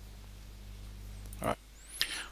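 A steady low electrical hum under faint background noise. It cuts off suddenly about one and a half seconds in, as a single short word is spoken.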